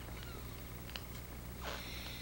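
Newborn baby feeding from a bottle: a few faint sucking clicks and small squeaks, one short rising squeak near the end.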